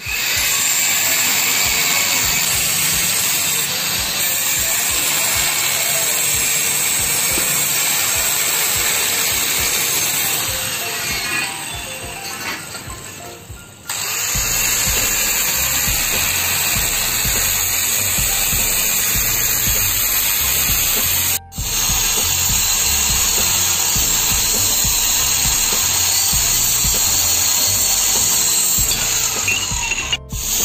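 Handheld angle grinder with a cut-off disc cutting through steel pipe: a loud, steady high-pitched grinding. It fades out about twelve seconds in and starts again about two seconds later, with a very short break a few seconds after that.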